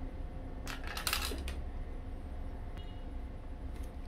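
Steel hand tools clinking and clattering against each other and the wooden floor about a second in, as a sickle is set down and a pair of hedge shears picked up, with a faint metallic ring and a small click near the end.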